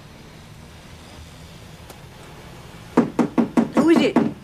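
Knocking on a room door: a quick run of about six knocks, starting about three seconds in.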